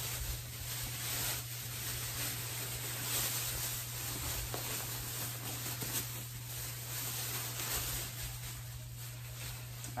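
Thin clear plastic bag crinkling and rustling continuously as a compressed plush teddy bear is worked out of it by hand.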